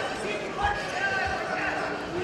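Two dull thuds, a bit over half a second apart, from freestyle wrestlers grappling and stepping on the mat during a hand-fight and tie-up, under shouting voices from the hall.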